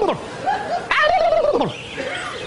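A man imitating a turkey's gobble with his voice: drawn-out gobbling calls in quick succession, each sliding down in pitch at the end.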